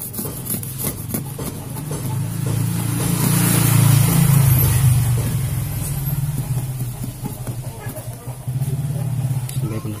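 A motor vehicle engine going by, swelling to its loudest about four seconds in and then fading, over the scratchy rubbing of a cloth scrubbing glue off the glass of an LCD panel.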